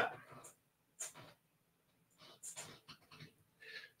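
A faint, distant voice away from the microphone, heard in a few short bits in an otherwise quiet room.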